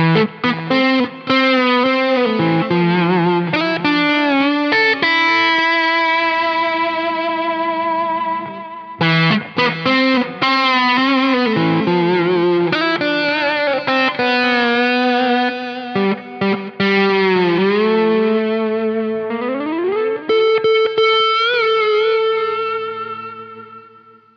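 Electric guitar through a lower-gain overdriven amp tone meant for playing with the fingers, playing a melodic lead of long sustained notes with vibrato and bends. About twenty seconds in, a note slides up in pitch and is held, fading near the end.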